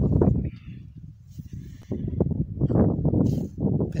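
Gusty wind buffeting the microphone: a loud, low rumble that comes and goes in uneven gusts.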